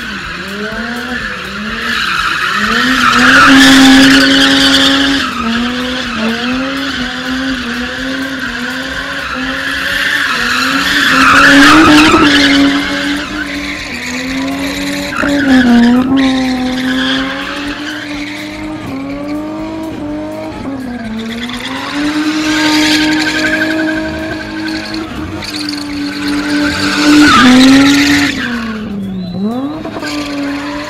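Car spinning with its engine held at high revs, the pitch wavering up and down as the throttle is worked. The tyres squeal loudly in about four swells as the car slides round, wheels spinning and smoking.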